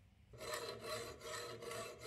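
Hand tool rasping back and forth on a brass casting clamped in a vise, as its casting runners are cut off and the metal is cleaned up; a steady scraping that starts about a third of a second in.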